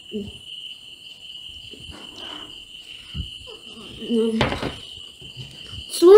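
A boy eating falooda from a tall glass with a metal spoon: faint spoon clicks and chewing, and a short voiced "mm" about four seconds in, over a steady high-pitched tone that runs throughout.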